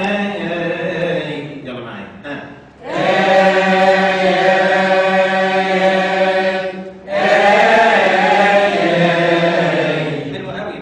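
A man's voice chanting a Coptic hymn melody unaccompanied into a microphone, stretching syllables into long, slowly wavering melismatic notes. A short breath break comes about three seconds in and another about seven seconds in.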